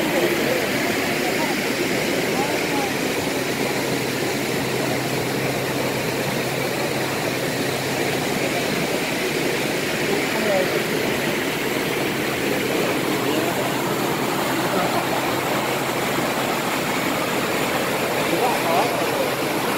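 Water rushing steadily through the open sluices of a canal lock gate as the lock chamber fills.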